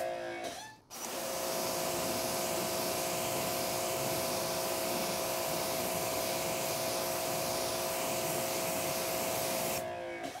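Greenworks GPW2000-1 electric pressure washer spraying: a steady motor-pump whine over the hiss of the water jet. It cuts out briefly near the start with its whine dropping in pitch, starts again about a second in, and runs steadily until it stops just before the end.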